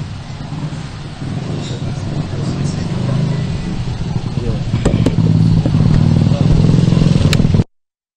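A motor vehicle engine running close by, a low steady hum that grows louder over several seconds, with a few sharp clicks; the sound cuts off suddenly near the end.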